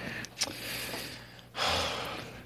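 A person breathing audibly close to the microphone: a soft breath around the middle, then a louder breath out near the end.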